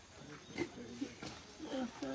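Men's grunts and groans of strain during a rescue effort, as a weak man is hauled up out of a grave by hand, with a couple of short knocks.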